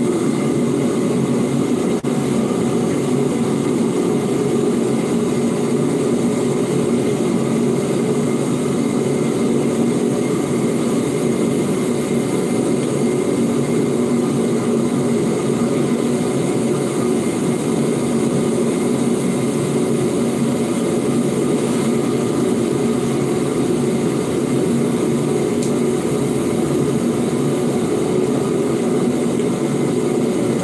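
Paint booth ventilation fan running steadily, a low whir with a hiss above it.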